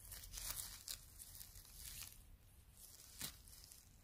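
Faint rustling and tearing of grass, moss and dry stems as a hand digs in to pick a mushroom, with a series of light crackles in the first two seconds and one sharper snap a little after three seconds in.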